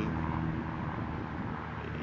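Steady low machine drone holding a few constant low pitches.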